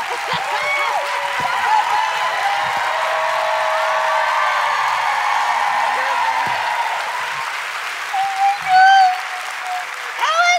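Audience applauding and cheering, with excited screams over it. Near the end comes a loud, high-pitched shriek.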